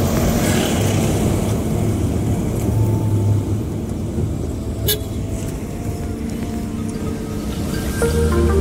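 Car engine and road noise heard from inside the cabin while driving, a steady low rumble. A brief sharp click sounds about five seconds in.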